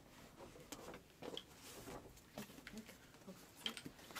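Near quiet, with a few faint, scattered light clicks and rustles of a gift box being handled.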